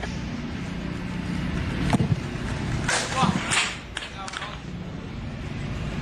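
Footballs being kicked on a grass training pitch: a few sharp thuds about two, three and four seconds in, with players' voices and outdoor background.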